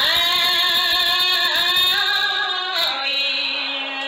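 A woman's solo voice chanting smot, Khmer Buddhist sung poetry, into a handheld microphone. She holds one long, slowly bending note, and a lower note begins about three seconds in.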